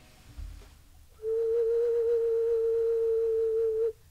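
A handmade, still-soft clay whistle with an added mouthpiece, test-blown to check that the mouthpiece still sounds. It plays one steady note that starts a little over a second in and is held for nearly three seconds, then cuts off sharply.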